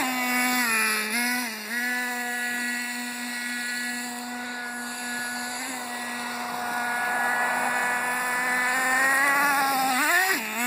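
Traxxas T-Maxx 2.5 nitro RC truck's small two-stroke glow engine running steadily, with two short dips in pitch in the first two seconds as the throttle is eased. It grows louder and slightly higher in pitch near the end as the truck comes back close.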